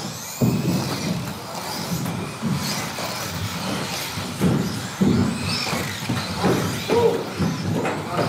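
Electric 2WD stock-class RC buggies racing around an indoor track: a steady motor and tyre noise with high whines that rise and fall as they speed up and slow, swelling suddenly a couple of times, in the echo of a large hall.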